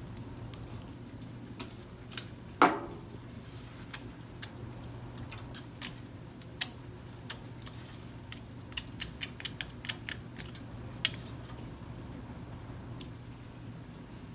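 A metal tool chipping and prying set plaster off an Ivocap denture flask, with irregular sharp clicks and clinks as the tool strikes and plaster chips drop onto a perforated steel tray, one louder ringing knock about three seconds in and a quick run of clicks past the middle. A steady low hum runs underneath.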